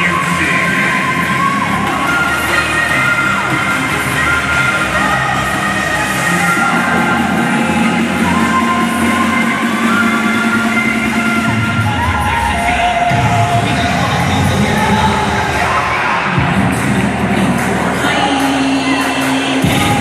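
Loud, continuous music for a cheerleading routine, with a crowd cheering over it.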